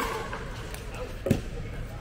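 Two sharp pocks of a pickleball being struck during a rally, one right at the start with a brief ringing pop and a louder, deeper knock about a second and a quarter later.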